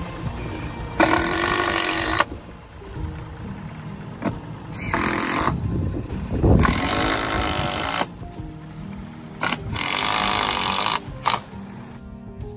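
Cordless impact driver driving screws into a plywood plate in four rattling bursts of a second or so each, with short clicks between, over background music.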